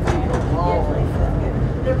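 Steady low rumble of a moving people-mover tram heard from inside the car, with a brief voice about half a second in.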